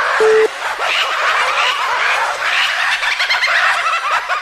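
The last beep of a telephone busy tone just after the start, then a loud, dense chorus of many quick overlapping chirps for the rest.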